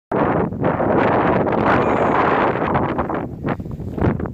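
Strong wind blowing through the trees and buffeting the microphone, rising and falling in loudness.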